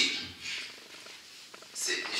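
A short pause in a man's spoken lecture. His voice trails off at the start, a brief breathy hiss follows about half a second in, then faint room tone until he starts speaking again near the end.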